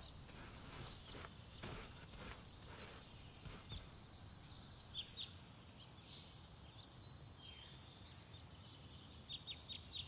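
A garden rake scraping through loose soil in a few short strokes over the first four seconds, faint against birds chirping in short bursts.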